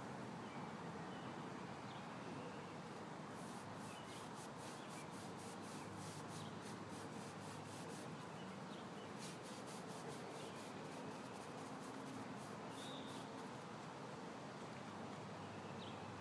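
Paintbrush scrubbed back and forth on concrete, a quick scratchy rhythm of about five strokes a second in two runs of several seconds each, over a faint steady outdoor hiss. Near the end come a couple of short high chirps.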